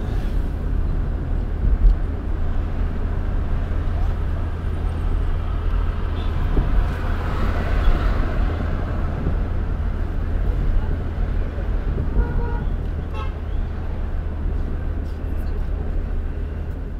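Steady road and traffic noise heard from a moving vehicle, with a heavy low rumble of engine, tyres and wind. Short vehicle-horn toots sound about three-quarters of the way through.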